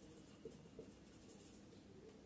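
Faint sounds of a marker writing on a whiteboard, with a couple of slightly sharper strokes under a second in.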